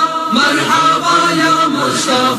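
Voices chanting an Urdu devotional naat, a melodic line of held notes that bend in pitch, resuming after a brief breath just after the start.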